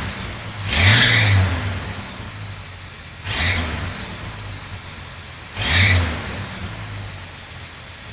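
Toyota FJ60 Land Cruiser's swapped-in engine, warmed up, idling at the tailpipe and revved with three short throttle blips a couple of seconds apart. Each blip rises and falls back to idle.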